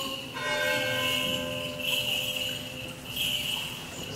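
Small bells jingling in swells about every second and a half, over a faint low note held by the chanters between phrases of Byzantine chant.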